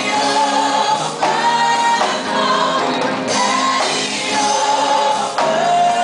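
Live gospel worship song: a group of voices singing long held notes that change about once a second, over keyboard and drum-kit accompaniment.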